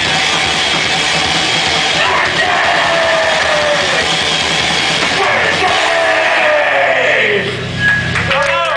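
Crust punk band playing live at full volume, a dense wall of distorted rock music. Over the last few seconds several notes slide steadily down in pitch as the song winds to its end.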